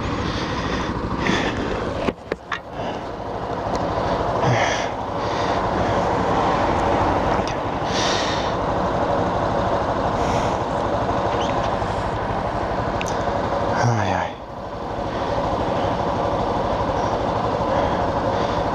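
Yamaha Factor 150's single-cylinder four-stroke engine running at low speed, mixed with wind rush on a helmet camera. The sound dips briefly and builds again with a rising note about two seconds in and again near fourteen seconds.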